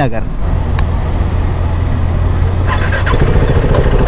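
Motorcycle engine running steadily under way, a low drone with road noise. About three seconds in the sound changes to a steadier, higher hum.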